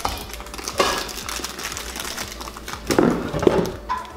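Packaging rustling and stainless steel Instant Pot accessories clinking and knocking as they are handled, with a louder cluster of knocks around three seconds in.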